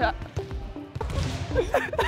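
Balls bouncing with dull thuds on a gym floor. Giggling and laughter start near the end.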